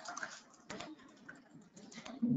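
Faint, irregular clicks and taps of a computer keyboard and mouse: a handful of short clicks spread unevenly through the moment.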